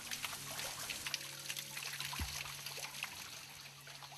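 Faint trickling and dripping water over a low, steady hum.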